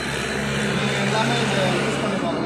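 A man talking over a steady low hum, like a running engine, which fades out just after the end.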